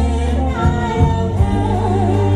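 Live Khmer dance music from a band, with a singer's voice carrying the melody over a strong bass line whose notes change about every half second.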